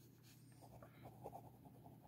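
Faint scratching of a ballpoint pen writing on squared notebook paper, in short irregular strokes as each letter is formed.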